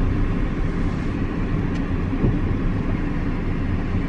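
Nissan Primastar van's engine running, heard from inside the cabin as a steady low rumble.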